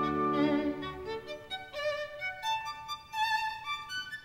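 Solo violin playing a quick run of high notes with vibrato. The orchestra strings' held chord underneath drops out about a second in, leaving the violin alone.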